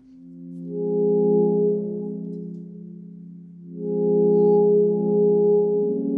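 Cristal Baschet, glass rods rubbed with wet fingers, sounding a sustained low chord of several notes. The chord swells in gently, fades back, then swells again about four seconds in.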